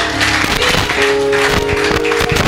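A congregation clapping, many hands at once, over background music with held sustained notes.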